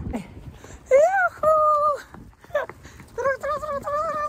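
Two drawn-out, high-pitched vocal cries, each about a second long. The first rises and then holds, and the second starts past the middle and carries on to the end.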